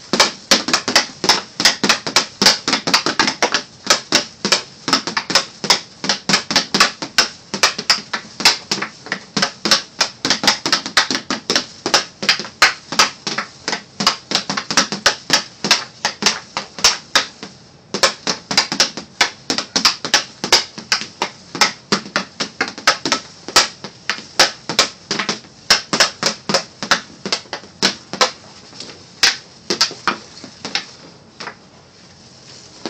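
Hockey stick blade knocking an eight-ounce hard plastic FlyPuck training puck from side to side on a plastic shooting pad while stickhandling: a steady run of sharp clacks, about three or four a second, with a brief break a little past halfway.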